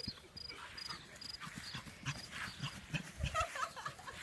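A beagle puppy running and bounding on grass, its paws making quick irregular thuds that are loudest a little past three seconds in.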